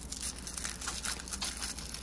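Thin tissue paper being unfolded and crinkled by hand, a soft papery rustle, as a small wrapped toy accessory is unwrapped.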